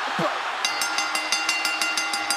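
Arena crowd noise with a shout, then about two-thirds of a second in, a wrestler's entrance music starts: a held synth chord over a fast ticking beat, about six ticks a second.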